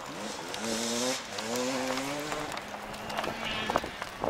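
Enduro motorcycle engine accelerating: its pitch rises, drops briefly about a second in at a gear change, rises again, then fades to a steadier drone.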